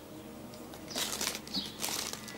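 Plastic packaging rustling and crinkling as it is handled, in two short bursts: one about a second in and a shorter one near the end.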